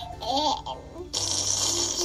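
A brief baby-like babble, then about a second of rustling, hissy noise, over faint background music.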